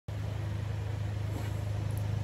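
A steady low hum with faint background noise.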